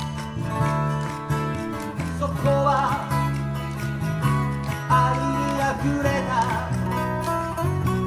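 Live acoustic band music: acoustic guitars strummed over an electric bass line, an instrumental passage with no singing.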